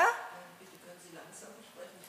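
The end of a word from a close-miked woman's voice, then a faint, distant voice of an audience member speaking off-microphone.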